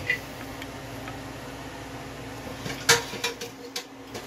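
A person quietly chewing a bite of cooked salmon over a steady low electrical hum, with a sharp click about three seconds in and a few lighter clicks after it.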